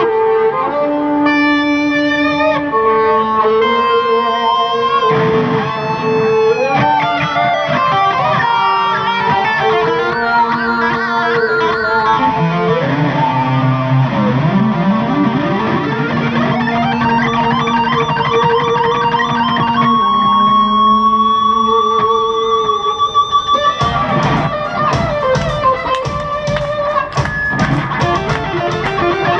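Live instrumental rock played on a 3Dvarius electric violin and an eight-string electric guitar. Held melody notes and pitch slides run over the guitar, and a few seconds before the end the guitar turns to rhythmic chords.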